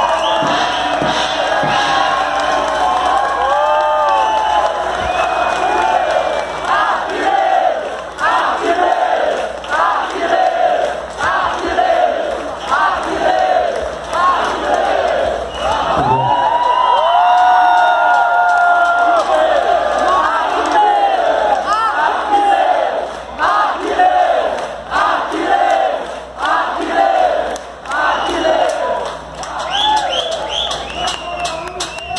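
Concert crowd cheering and shouting to greet a newly introduced drummer. From about seven seconds in, the shouts fall into a rhythmic chant of about one shout a second.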